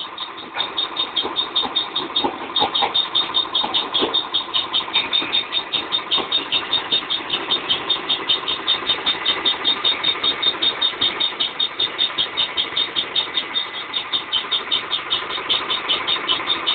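Brick crusher machine running steadily, its drive giving a fast, even pulsing beat of about five pulses a second.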